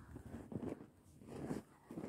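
Faint footsteps crunching through deep snow, a few uneven steps.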